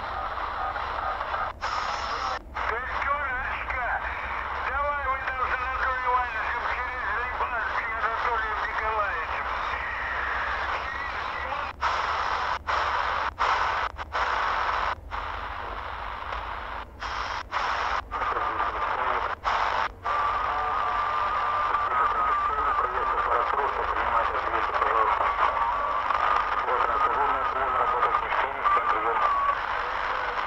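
Garbled voice chatter from unlicensed operators on the 3 MHz shortwave band, heard through a Tecsun pocket radio's speaker over steady static. Between about 12 and 20 seconds the sound cuts out briefly several times as the radio is stepped up in frequency. In the last third a wavering whistle runs under the voices.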